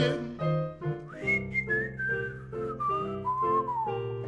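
A digital keyboard plays a steady blues chord vamp, and about a second in a man starts whistling a single line over it that slides downward in steps to a lower note by the end.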